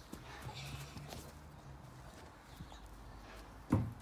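Faint garden sounds of hand trowels digging in soil and footsteps on grass, a few soft taps and scrapes. A voice starts loudly near the end.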